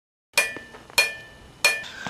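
Three sharp, ringing metallic hits, evenly spaced about two-thirds of a second apart, each dying away quickly.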